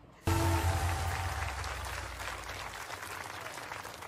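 Singing-show broadcast audio: a loud musical hit with a deep held bass note, together with audience applause, comes in suddenly about a quarter of a second in and slowly fades.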